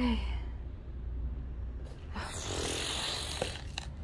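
A woman's long, breathy sigh of frustration starting about two seconds in, followed by a couple of faint clicks.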